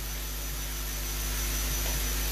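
Steady low electrical hum with hiss, unchanging, with a few faint steady tones above the hum.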